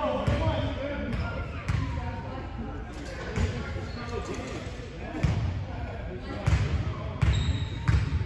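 A basketball bouncing on a hardwood gym floor, about seven unevenly spaced bounces echoing in the large hall and loudest near the end, with voices in the background.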